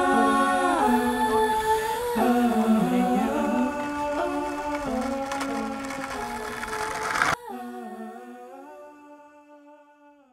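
Soundtrack of a cappella humming: long held vocal notes that shift pitch now and then. It drops suddenly in level about seven seconds in, then fades out.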